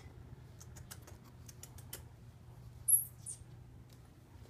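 Kittens moving about: a run of light clicks and taps, then a short, high-pitched squeak about three seconds in, followed by a fainter second one.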